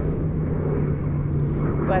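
Steady low drone of a distant engine holding one pitch, over a low rumble.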